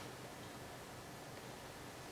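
Quiet pause: faint, steady room tone with a soft hiss.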